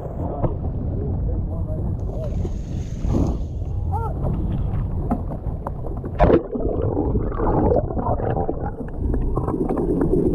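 Wind and choppy seawater rushing against a handheld action camera, then a loud splash about six seconds in as the camera is plunged under the surface, followed by muffled underwater water noise.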